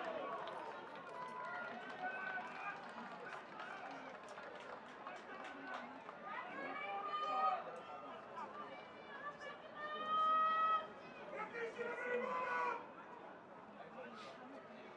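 Rugby players shouting and calling to one another across an open field, with several louder, drawn-out calls midway and near the end.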